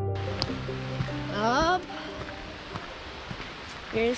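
Steady rush of a snowmelt-swollen creek, with background music dying away in the first two seconds and a short rising voice about a second and a half in.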